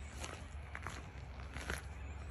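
Footsteps on dry grass and dirt, a few steps spaced about half a second to a second apart, over a low steady rumble.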